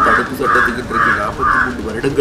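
A crow cawing repeatedly, about four caws in a steady series at roughly two a second.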